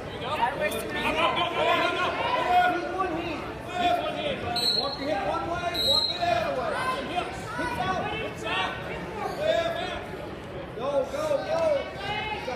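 Coaches and spectators shouting and calling out during a wrestling bout in a gym, several voices overlapping, with two short high tones a little over a second apart near the middle.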